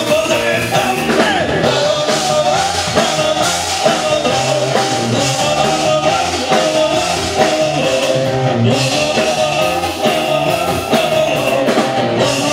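Live band playing an upbeat rock song with a singer, loud and continuous.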